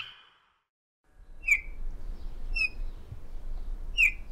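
A bird chirping outdoors: three short, sharp, falling chirps about a second apart over a low steady background, after a near-silent gap about a second in.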